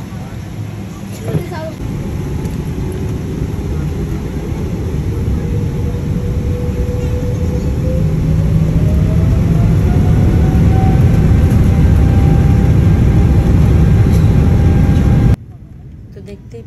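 Jet airliner engines spooling up for the takeoff roll, heard inside the cabin: a low roar growing steadily louder, with an engine whine rising in pitch and then holding steady. It cuts off suddenly near the end.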